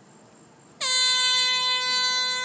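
An air horn sounds one long, steady blast, coming in suddenly about a second in and holding one pitch. It is the warning signal sounded ahead of the demolition charges.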